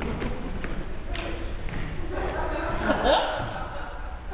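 Indistinct voices in a large hall, too unclear for words to be made out, with a few knocks and thumps.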